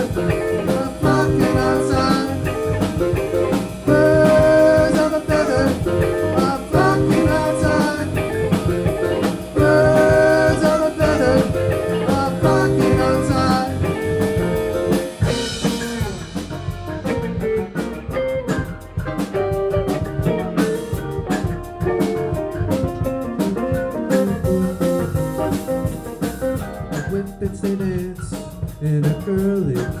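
A live band plays an instrumental passage of a bluesy jam-band song on electric guitars, bass, drum kit and keyboard. A phrase repeats about every three seconds in the first half; about halfway through the sound turns sparser and more driven by drum strokes.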